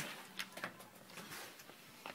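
Faint handling noise from a handheld phone being moved, with a few light clicks.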